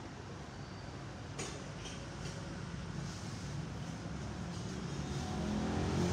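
Steady low background rumble that grows slowly louder, with a sharp snip of hair-cutting shears about a second and a half in and a fainter one just after two seconds.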